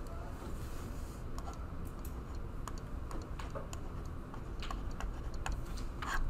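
Light, irregular clicks and taps of a stylus on a tablet screen as a word is handwritten, over a low steady room hum.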